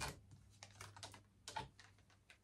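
Faint clicks and taps of tarot cards being handled and taken from the deck. The clearest comes right at the start and another about one and a half seconds in.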